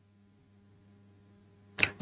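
Near silence in a pause between speech, with only a faint steady hum. A man's voice starts up briefly just before the end.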